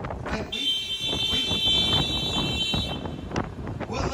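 A steady high-pitched tone, like an alarm or a squealing brake, sounds for about two and a half seconds over the rumble of city street noise and wind on the microphone.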